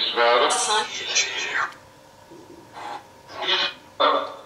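A voice speaking two short phrases with a pause between them, captioned as 'Yes madam' and 'He's here', which the ghost hunters present as a spirit voice answering them.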